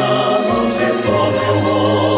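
Mixed church choir singing an anthem in Twi, several voices in harmony on held notes.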